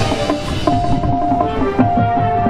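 High school marching band playing its field show: held notes over a steady beat of drums and percussion.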